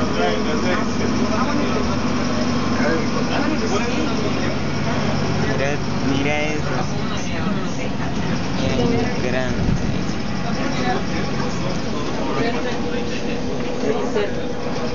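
Airport apron shuttle bus driving, its engine running with a steady low hum, heard from inside the cabin with passengers chatting.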